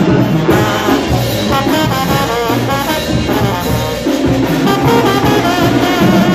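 A Mexican banda brass band playing live, with trumpets and trombones carrying the melody.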